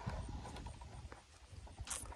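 Faint clicks and light knocks of hands working a battery connection inside the plastic case of a solar electric-fence charger, with one sharper click near the end, over a low rumble.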